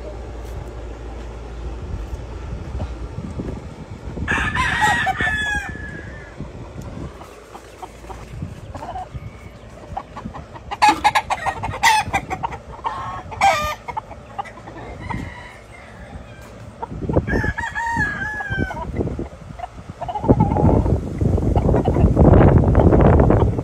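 Gamefowl roosters crowing in three bouts, about four seconds in, around eleven seconds and around seventeen seconds. A low rumble swells near the end.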